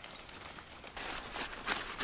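Rustling and short crisp crackles of leafy vegetable plants being handled and pulled from the soil by hand, starting about a second in.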